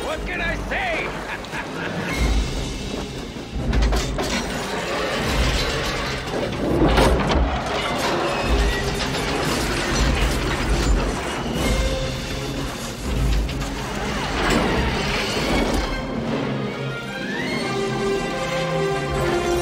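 Film soundtrack mix: score music over the clanks, whirs and repeated heavy thuds of a sailboat's mechanical rigging as a metal boom swings out and the sails are raised.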